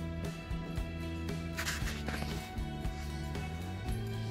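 Background music with held notes over a steady low bass line, with a short hissy burst about halfway through.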